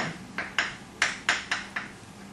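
Chalk on a chalkboard while numbers are being written: a quick series of about seven sharp taps and short scrapes.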